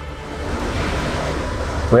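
A gust of storm wind rushing, swelling about half a second in and then holding steady.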